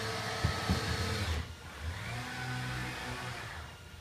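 Mitsubishi RV-12SL six-axis industrial robot arm running through its moves at high speed: its servo motors and drives whine steadily, and the pitch shifts as it changes from one move to the next. A few light knocks come in the first second.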